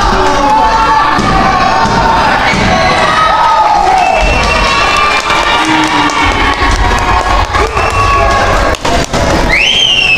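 Arena crowd cheering and shouting, with children's voices among them. Near the end one high call rises sharply and holds.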